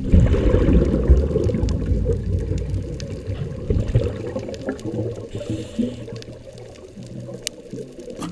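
Underwater sound picked up by the camera: a muffled rush of water and bubbles, loudest at first and fading, with scattered sharp clicks.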